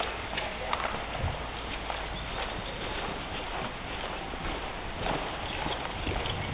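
Horse's hooves cantering on soft dirt arena footing, a run of dull hoofbeats.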